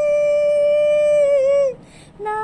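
A woman's singing voice holding one long note, steady in pitch, that dips slightly and stops near the end.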